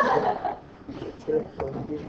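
Indistinct talking: a voice near the start, then a few short scattered words.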